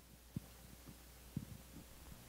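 Low steady hum under two soft, dull thumps about a second apart: handling noise on a handheld microphone as its holder leans and reaches.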